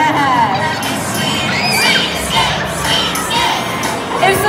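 A crowd of children shouting and shrieking, with cheering, including a few high squeals about two seconds in.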